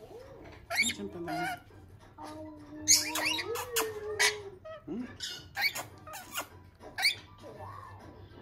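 Rainbow lorikeets giving many short, sharp chirps and squeaks while being fed a soft mush from a spoon and a metal cup. A long, low hummed voice runs through the middle.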